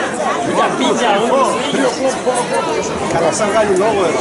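Crowd chatter: many people talking at once, with a few nearby voices standing out from the babble.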